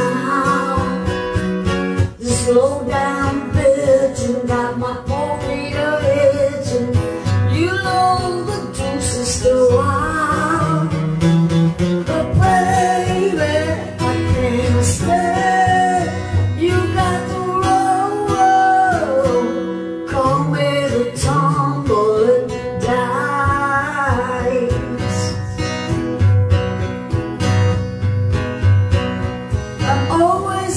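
Acoustic guitar strumming a rock song, with a voice singing over it.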